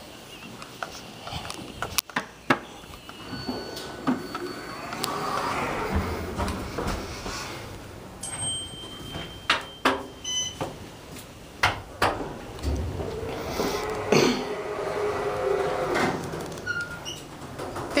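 Sliding stainless-steel doors of a 1976 Otis Series 5 hydraulic elevator opening and closing, with a steady hum and rustle of door equipment and several sharp clicks and knocks. Two brief thin high tones sound, one a third of the way in and one near the middle.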